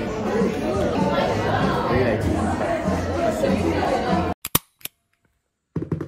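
People talking amid the chatter of a busy café. Near the end the sound cuts out abruptly, with two sharp clicks, a moment of near silence, then a rustle of handling noise.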